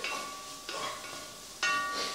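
Onions sizzling in oil in a Dutch oven while being stirred, with two knocks of the wooden spoon against the pot, each ringing briefly.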